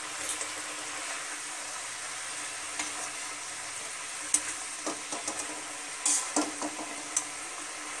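Bengali mustard-gravy fish curry (bhola bhetki jhal) bubbling and sizzling in a pan on a gas burner: a steady hiss with a few light clicks in the second half.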